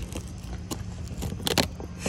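Cardboard cake box being handled and its tape picked at: scattered light clicks and a short crinkly burst about one and a half seconds in, over a steady low rumble.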